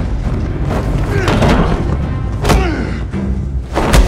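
Dramatic film score under a close-quarters fight: men grunting and straining, with heavy thuds of bodies struggling. There are two sharp impacts, one about two and a half seconds in and one at the very end as they go down onto the floor.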